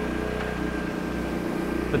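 Generator engine running steadily, a low even hum.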